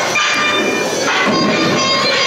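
Loud recorded soundtrack played over a hall's loudspeakers, with several steady tones held together over a dense, rough wash of sound.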